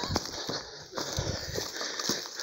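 Footsteps crunching through dry leaves and twigs on a dirt path: irregular soft crackles and rustles as someone walks along carrying a landing net.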